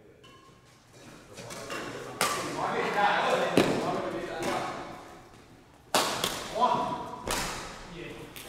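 Badminton rackets striking a shuttlecock during a doubles rally: about five sharp strikes, spaced irregularly, each with a short echoing tail in the hall, with players' voices calling between the hits.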